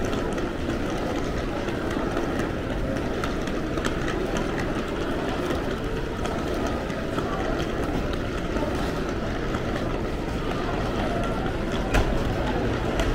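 Steady background din of a busy airport concourse, heard while walking through it: an even low rumble of crowd and building noise with faint scattered clicks.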